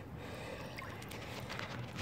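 Faint water sounds, a soft trickling and lapping with a few small drips and splashes, as a muskie is held by the tail at the surface beside a boat for release.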